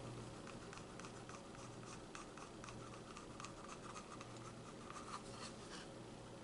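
Faint scratching and small ticks from a wooden stir stick scraping thick acrylic paint out of a paper cup into a plastic pouring cup, over a low steady hum.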